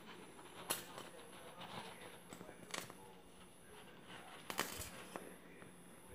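Faint handling sounds of paper and cardboard: a white paper circle being pressed and glued onto a cardboard circle, with light rustling and a few short sharp taps, the clearest about a second in, near the middle and near the end.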